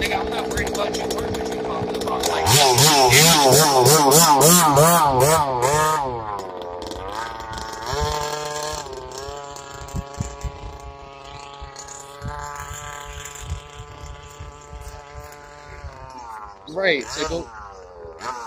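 Small two-stroke gas engine of a large-scale RC dragster. It runs steadily, then revs hard with a warbling pitch about two seconds in as the car launches. After about six seconds the pitch drops and the engine runs fainter and steadier as the car goes away.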